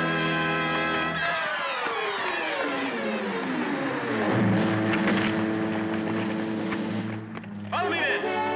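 Orchestral film score: a held chord, then a long falling glide in pitch, then sustained notes, with a short rising swoop near the end.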